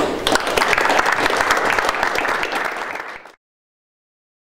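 An audience applauding: dense, steady clapping that cuts off abruptly a little over three seconds in.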